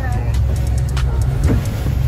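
Steady low rumble of a boat under way at sea: engine and wind on the microphone, with a few faint knocks and distant voices.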